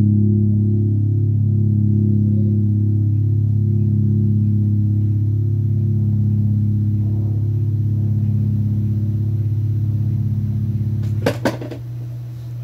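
A low chord held on a keyboard, steady with a slow wobbling beat, then released about eleven seconds in with a couple of sharp clicks.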